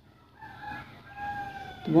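A rooster crowing faintly: a drawn-out call in two parts, its pitch falling slightly, starting about half a second in.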